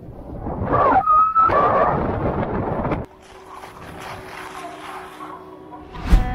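Snowboard sliding over groomed snow with wind on the microphone, a brief squeal about a second in. After about three seconds the sound cuts suddenly to a quieter, steady mechanical hum with a low tone from the chairlift station.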